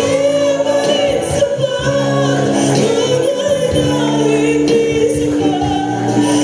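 Mixed church choir of men and women singing a slow, solemn worship song, holding long sustained notes.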